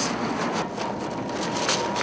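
Steady street traffic noise, an even hiss of passing vehicles, with a faint steady high tone through most of it.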